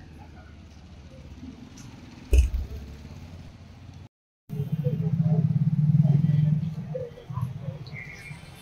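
A low background hum with one sharp thump about two and a half seconds in. After a brief break, a motorbike engine runs close by and loud for a couple of seconds, then fades near the end.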